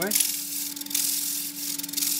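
A woodturning gouge cutting a spinning Manchurian pear bowl on a lathe, taking off a small ridge on the foot: a steady hiss of the cut with a short break about a second in, over the lathe motor's steady hum.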